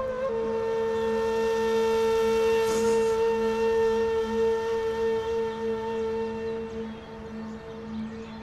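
Background music: a flute holding one long, steady note over a low sustained drone, growing a little quieter near the end.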